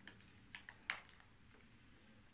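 Faint handling noise: four light clicks and taps as hands move over the guitar's wooden body, the loudest a little under a second in.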